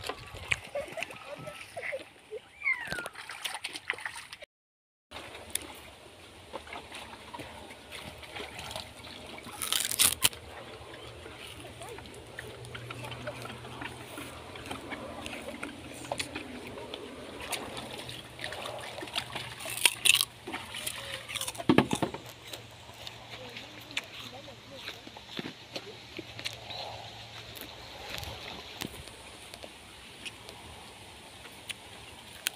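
Water sloshing and splashing as laundry is hand-washed in a plastic basin and water is scooped from the river with a second basin, with a few sharper splashes along the way.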